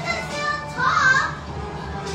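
Children playing and calling out in a room, with music playing in the background.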